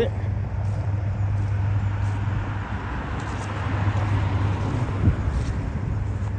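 Road traffic: a vehicle going past on the road, its tyre and engine noise swelling and fading around the middle, over a steady low hum.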